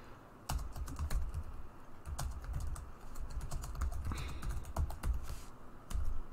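Typing on a computer keyboard: a quick, irregular run of key clicks, each with a dull low thud, starting about half a second in.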